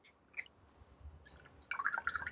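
Maple syrup poured from a small bottle into a metal jigger and then tipped into a steel cocktail shaker: faint small ticks, then a brief patter of dripping liquid near the end as the jigger is emptied into the tin.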